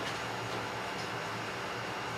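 Steady, even background hiss of room noise, with no distinct events.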